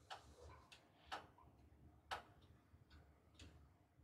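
Near silence: room tone with a few faint ticks about a second apart.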